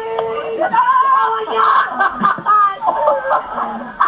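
Kids shouting and laughing, loud unintelligible voices with no clear words.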